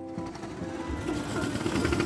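Small go-kart engines running with a fast rattling buzz, over background music.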